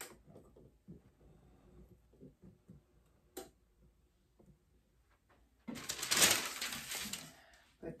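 Quiet handling noises and a sharp click about three and a half seconds in as the heat press is opened, then a loud rustle of butcher paper for about two seconds near the end as the flip-flop soles are lifted from it.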